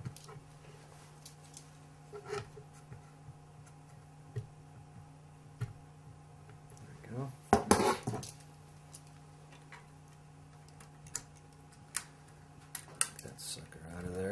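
Small metallic clicks and clinks of multi-tool pliers working a resistor's leads on a circuit board, with one louder clatter a little past the middle as the board is set down on a wooden table. A steady low hum runs underneath.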